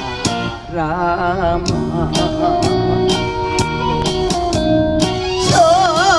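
A woman singing an old Korean trot song with wide vibrato over a backing track that has a steady beat. Her voice drops out in the middle and comes back about five and a half seconds in.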